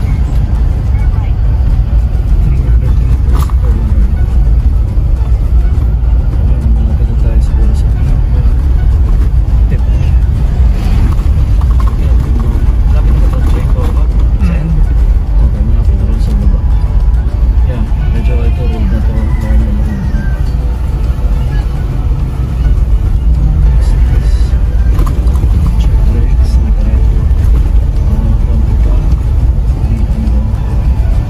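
Steady low rumble of a car's engine and tyres heard from inside the cabin as it drives a winding road, with music and faint voices underneath.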